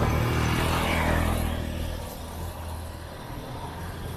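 A motor vehicle passing close by on the street, loudest in the first two seconds and then fading away.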